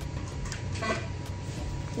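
Steady low machine hum with a faint steady tone, and one short sharp sound about a second in as the Morpheus8 radiofrequency microneedling handpiece fires a pulse into the skin of the neck.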